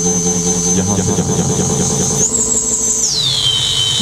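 High-pitched feedback whistle from a loudspeaker driven by a PT2399 echo mixer circuit, with faint echoed copies of the tone. It holds steady, steps up in pitch about two seconds in, then glides down to a lower whistle near the end, over a low hum. This is microphone-to-speaker feedback through the echo circuit.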